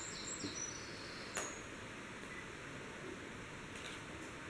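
Faint background with a few short high bird chirps in the first second, then a single soft click about a second and a half in.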